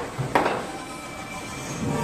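Foosball table in play: a sharp knock of the ball struck by a plastic player figure about a third of a second in, among smaller knocks. Around them is a rumbling rattle of the ball rolling on the table and the rods sliding in their bearings.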